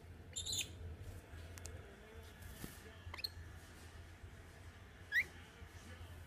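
Green-naped lorikeet giving three short, high chirps, the later ones sweeping quickly upward, the last and loudest near the end.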